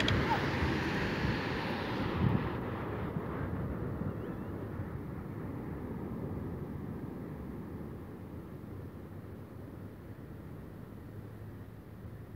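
Wind noise on the microphone over the wash of surf, a steady low haze that slowly grows quieter.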